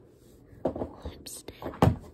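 Handling noise from the recording phone as it is grabbed and moved: a run of rustles and bumps over the second half, with the loudest knock near the end.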